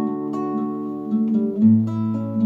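Classical guitar playing chords that ring on, with no voice. About one and a half seconds in, the chord changes and a new low bass note sounds.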